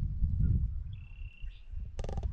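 Low rumble of wind on the microphone, with a single thin whistled bird note about a second long starting about a second in.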